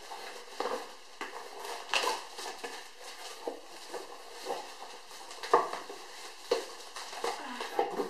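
Cardboard shipping box being handled as books are worked out of it: irregular rustles, scrapes and light knocks, with a few sharper ones about two seconds in and again near five and a half and six and a half seconds.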